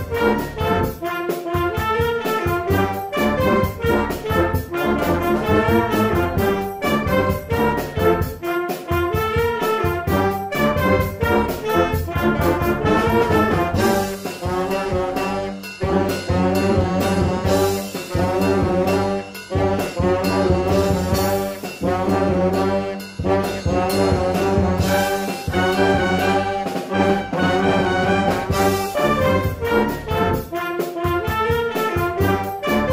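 A brass-led college band playing together: trombones, trumpets and saxophones in short, punchy notes over a steady drum-kit beat.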